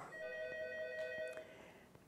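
A desk telephone rings once with an electronic ring: a steady chord of several tones that lasts about a second and a half and then cuts off.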